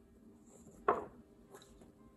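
Paper picture cards being swapped in the hand: one short, sharp slap of card about a second in, then a faint rustle, over quiet room tone.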